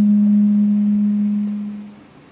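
Public-address system feedback: one steady, loud, low hum-like howl at a single pitch, dying away near the end.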